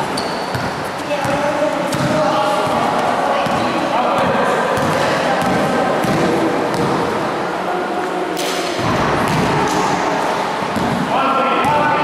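Basketball being dribbled on a gym floor, a run of bounces, with people's voices talking and calling out in the hall throughout.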